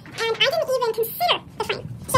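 Only speech: people talking in a small room, the words unclear.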